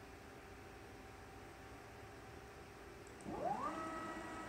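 Faint steady hum, then about three seconds in the gantry drive motors of a CNC plasma cutting table start a whine that rises in pitch as the gantry speeds up, then holds steady as it jogs along the plate.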